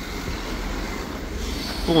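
Cars driving slowly past close by on an asphalt street: a low engine hum with tyre noise, the hiss growing near the end as a van comes up.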